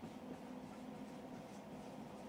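Dry-erase marker writing on a whiteboard, faint scratchy strokes over a low steady hum.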